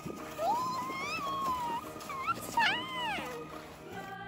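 Background music with a child's high-pitched squeals over it: one long wavering squeal, then a short one and two quick rising-and-falling ones about three seconds in, as the child slides down on a plastic sled.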